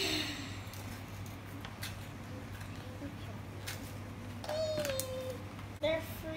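Small handling noises at a table: a few short clicks and rustles of food packaging as toppings are torn and placed on pizza, over a steady low hum. A brief child's voice sound, a single sliding 'mm', comes about four and a half seconds in.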